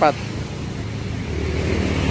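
Low, steady rumble of a motor vehicle, growing a little louder about halfway through.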